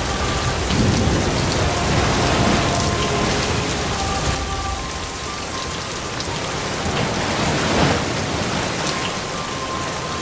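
Steady rain falling on wet tarmac and puddles, an even hiss, with low rumbles swelling about a second in, around two and a half seconds in, and near eight seconds.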